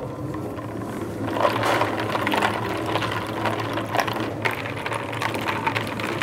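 Electric spiral dough mixer running with a steady motor hum as its hook works bread dough in the steel bowl, with a few light clicks about four seconds in.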